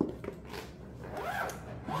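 Zipper on a fabric garment bag being run along, a soft rasping slide that wavers in pitch with the pull.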